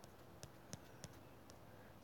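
Near silence, with a few faint, sharp clicks spread over two seconds from handling the device while scrolling through a live chat.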